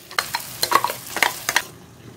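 A spoon scraping a stainless steel kadai as a ground paste is stirred into onions frying in oil, with a sizzle from the hot oil. The stirring stops after about a second and a half.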